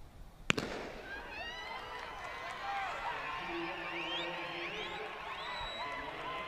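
A starter's gun fires once with a sharp crack to start a 100 m sprint. Spectators cheer and shout right after it and keep going as the runners race.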